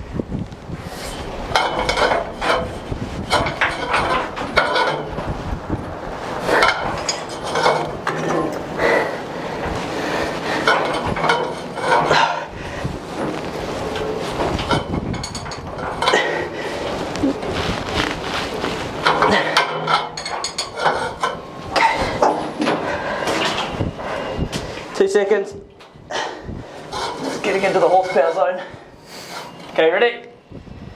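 A socket on a long pipe breaker bar working a tight bolt through the deck overhead: a steady run of metallic clicks, creaks and clanks, the noise of the socket on the bolt.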